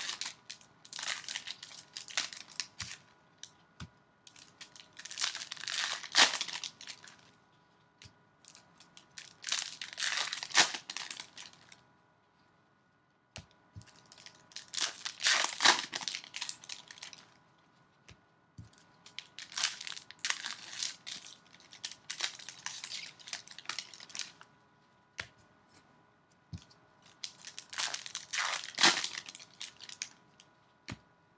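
Foil trading-card pack wrappers being torn open and crumpled by hand, in about seven crinkling bursts of a second or two each with short quiet gaps between packs.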